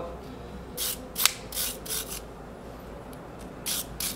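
A soft copper-bristle brush scrubbing out the inside of an espresso machine's E61 group head to clean it, in a few short scraping strokes with a sharp click about a second in. More rapid strokes start near the end.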